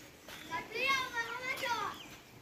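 A child's voice calling out in a high, rising and falling tone for about a second and a half, starting about half a second in.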